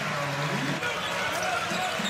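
Arena sound of a college basketball game on a hardwood court: steady crowd noise with a voice in the first second, and a basketball being dribbled.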